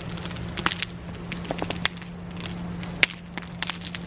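Fire crackling, with irregular sharp pops, over a faint steady low hum.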